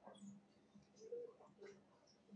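Near silence: room tone with a steady low hum and faint, indistinct voices murmuring now and then.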